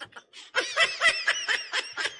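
A man laughing: after a brief pause, a quick run of short laugh pulses starts about half a second in.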